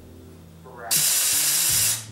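A loud burst of hissing air, starting abruptly about a second in and cutting off just as abruptly a second later.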